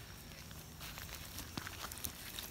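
Faint outdoor background with a few soft footsteps on loose soil and leaf litter.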